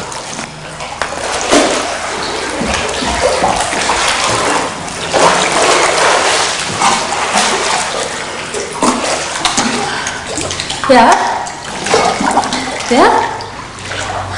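A swimmer's strokes splashing and sloshing the water of a pool.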